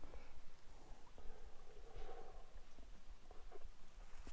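Soft footsteps scuffing and crunching on a sandy dirt trail, faint and irregular.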